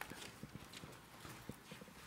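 Faint, scattered small taps and rustles of a Bible being handled and leafed through at a pulpit, picked up by the pulpit microphone.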